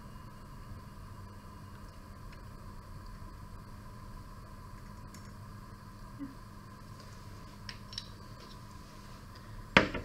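Quiet room tone with a steady electrical hum, a few faint clicks, and one sharp knock just before the end.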